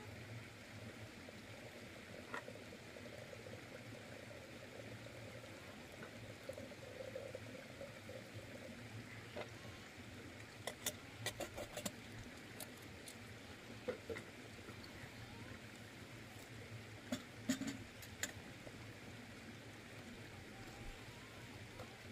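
A metal kettle and teapot being handled and set down by a wood fire: a few light clinks and knocks, mostly about halfway through and again a few seconds later, over faint steady background noise.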